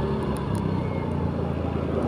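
A motor scooter's small engine running steadily while riding along, heard from the rider's seat as a low hum mixed with wind and road noise.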